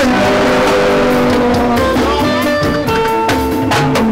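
Live band playing an instrumental passage with held guitar notes, no singing; sharp drum strikes join in about halfway through.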